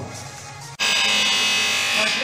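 A loud, steady, high-pitched buzz starts abruptly just under a second in, right after a man's brief spoken thanks.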